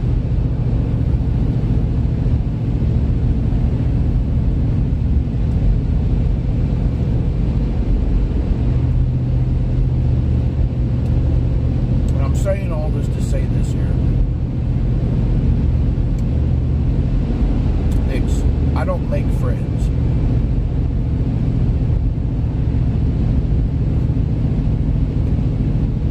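Steady low rumble of a vehicle's engine and road noise heard from inside the cabin while driving; the engine note strengthens about nine seconds in and holds.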